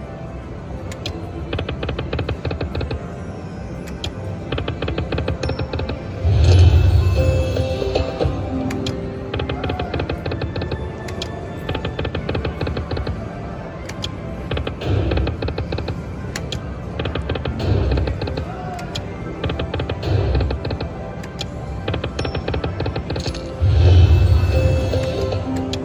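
Goddess Rising video slot machine playing through repeated spins: its game music runs under bursts of rapid ticking as the reels spin. A deep thump sounds about six seconds in and again near the end, the loudest moments, with smaller ones between as the reels land.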